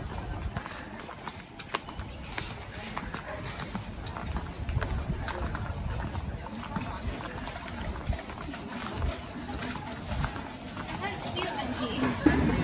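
Footsteps on stone paving, an irregular series of short clicks, with low murmured voices of people passing and a gusty low rumble on the microphone.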